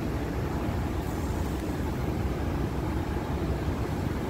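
City street traffic: a steady low rumble of car engines and tyres.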